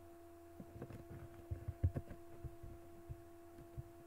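A steady faint pitched hum with soft low clicks and thumps, most in the middle, from a computer mouse being handled and clicked.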